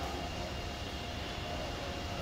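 A steady low rumble of background noise, with no distinct knocks or calls.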